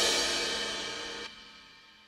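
Yamaha arranger keyboard style (a gipsy csárdás accompaniment) ending: a cymbal and the last chord ring out and fade steadily, then cut off a little over a second in, leaving silence.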